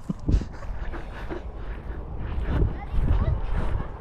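Wind rumbling on the microphone, with faint voices in the background. No motor is running.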